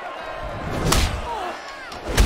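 Boxing-fight scene soundtrack: one sharp punch impact about a second in, over a din of shouting voices.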